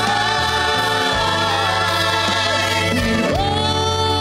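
Gospel group singing together in harmony over a live backing band, the voices holding long, drawn-out notes over a steady bass line.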